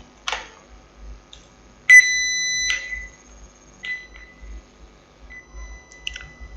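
A steady 2-kilohertz sine tone generated in Python plays through the computer. It comes in sharply about two seconds in, is loud for under a second, then carries on faintly. A single click comes shortly before it.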